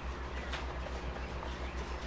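Coturnix quail moving and calling faintly in a wire cage, over a steady, pulsing low hum.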